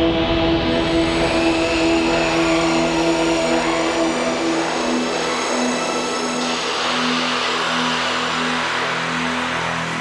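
Dark synthwave intro music: sustained low synthesizer drone notes under a rushing, engine-like noise layer that turns brighter about six and a half seconds in.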